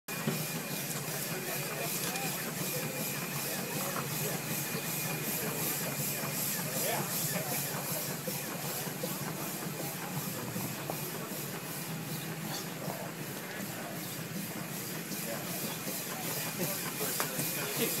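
1913 New Huber steam traction engine under steam, giving off a steady hiss of steam with a faint high steady tone and a faint regular beat.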